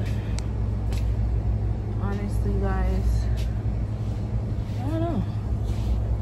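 Shop ambience: a steady low rumble throughout, with a few light clicks and brief pitched voice sounds about two seconds in and again near five seconds.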